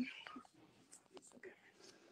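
Faint, breathy whispering from a woman over a video call; her voice trails off about half a second in, leaving only scattered quiet traces.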